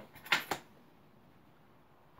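Two quick handling sounds from a rubber suction cup being worked in gloved hands about half a second in, then quiet room tone.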